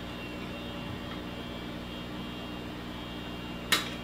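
Steady hum of the room, then a single sharp snip near the end as a zip tie is cut.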